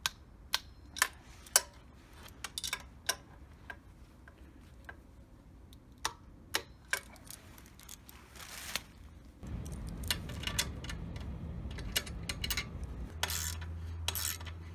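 Torque wrench clicking in short, sharp, separate clicks as exhaust flange nuts are tightened a little at a time to 14 Nm. From about two-thirds of the way through, a low, steady rumble sits under a few fainter clicks.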